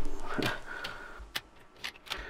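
A CD being fitted into a laptop's slim pop-out optical drive tray, which is then pushed shut: small plastic handling sounds, then two sharp clicks in the second half.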